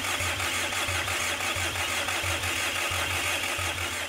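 Starter motor cranking a 2008 Kia Sorento's 2.5-litre four-cylinder turbodiesel without it firing: a steady whirr with an uneven chug of compression strokes. This is priming oil and fuel through a long-stored replacement engine. By ear, the mechanic judges one cylinder slightly short of compression, from hydraulic lash adjusters not yet pumped up.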